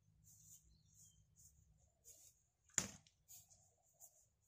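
Near silence broken by one sharp crack a little under three seconds in, from a spear thrown with a stick atlatl at a cardboard box target.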